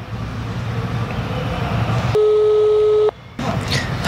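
A mobile phone call ringing out: a single steady ring-back tone lasting about a second, starting about two seconds in and cutting off sharply. Before it there is a steady low background hum.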